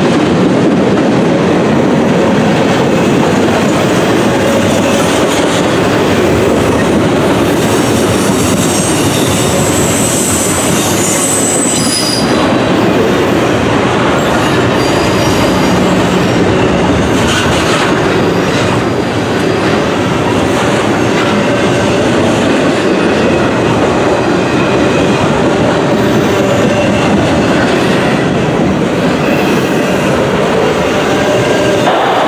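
Double-stack intermodal freight train rolling past close by: a loud, steady rumble and rattle of wheels and cars on the rails. Between about eight and twelve seconds in there is a thin, high-pitched squeal from the wheels.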